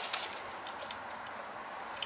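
Dry fallen leaves rustling and crackling as a grey squirrel forages through them, with a couple of sharp crackles at the start over a steady background hiss.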